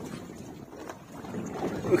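Wind and sea noise aboard a small fishing boat at sea, a low even rumble with wind on the microphone. A voice comes in faintly near the end.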